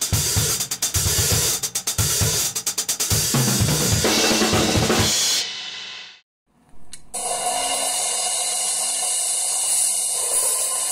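Acoustic drum kit being played, with cymbals, hi-hat, snare and kick in a busy pattern, fading out about five and a half seconds in. After a moment of silence, a steady hiss of room noise runs from about seven seconds on.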